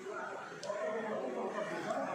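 Several people talking indistinctly at once, a low murmur of conversation with no clear words.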